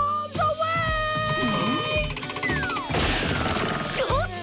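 Cartoon background music: a held, slightly wavering note for about two seconds, then a falling glide and a short burst of noise near the end.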